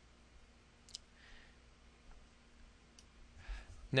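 Two faint computer-mouse clicks about two seconds apart over quiet room tone, as the lesson software moves to its next page.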